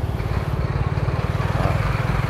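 Vehicle engine running steadily at low speed: a low, evenly pulsing drone.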